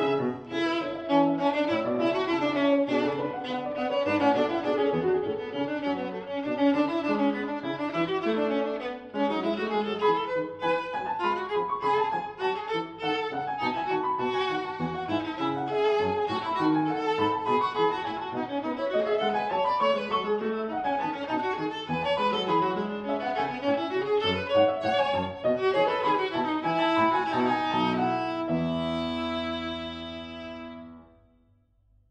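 Violin and grand piano playing together in quick-moving notes, ending on a long held chord near the end that starts to fade away.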